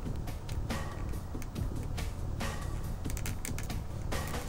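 Small hard plastic clicks and taps as a plastic spine is pushed and popped into a socket on an action figure's back, with the clicks coming thickest near the end. Background music plays underneath.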